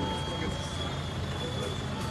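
Steady low rumble of background noise, as from traffic or an idling engine, with a faint steady high-pitched tone over it.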